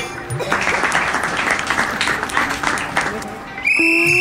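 Crowd clapping for about two and a half seconds over background music. Near the end a loud, high-pitched steady tone starts, with sliding tones beneath it.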